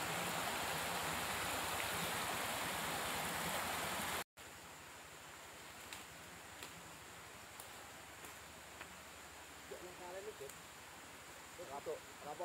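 Steady rushing outdoor hiss, then an abrupt cut after about four seconds to a much quieter outdoor background with a few faint clicks and distant voices near the end.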